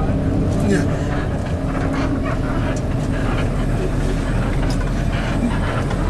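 Steady low rumble of a coach bus running, heard from inside the passenger cabin.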